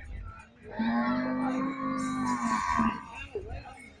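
A vehicle horn sounding one long, flat blast of about two seconds, then a short second toot at the same pitch.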